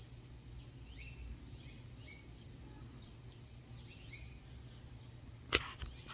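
Small birds chirping outside, a scatter of short, quick chirps over a steady low hum. A single sharp click about five and a half seconds in.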